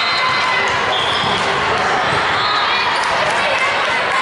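Busy volleyball gym: volleyballs being struck and bouncing on hardwood floors, with sneakers squeaking and players' voices ringing through a large hall.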